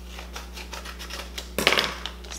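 Scissors snipping open a paper seasoning packet: a few light clicks, then a louder, brief crinkling cut about a second and a half in.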